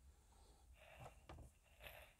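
Near silence: faint room tone with a few soft clicks, about a second in and again near the end.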